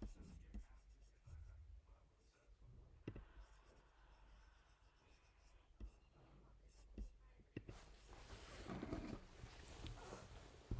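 Near-silent room tone with a few faint, sharp clicks spread through the middle, like clicks at a computer, and a soft breathy sound near the end.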